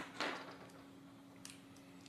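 A small precision screwdriver set down on a tabletop: a light click, then a brief clatter that dies away quickly, and a faint tick about a second and a half later.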